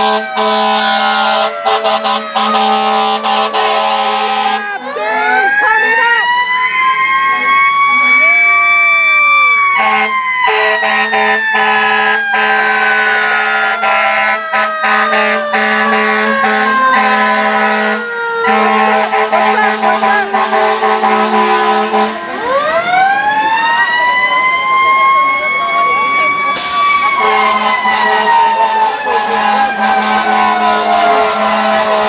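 Fire truck siren wailing: the pitch rises over about five seconds, then falls slowly for over ten seconds, and rises again about 22 seconds in before falling once more.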